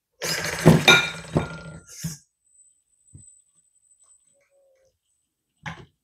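Air and hydraulic fluid blowing back into the oil tank of an XDRC 945 RC excavator as its stick cylinder is pushed by hand, with the pump off and the valve held open. It comes as one rough, sputtering burst of about two seconds near the start.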